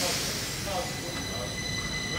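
Stockholm metro C20 train starting to pull away from the platform: a sudden hiss at the start, then a steady high-pitched whine that grows louder as the train begins to move.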